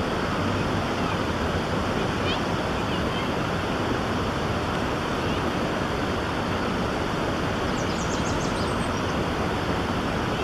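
Fast-flowing stream water rushing steadily. Faint high bird chirps come about two seconds in, then a quick series of thin high notes near the end.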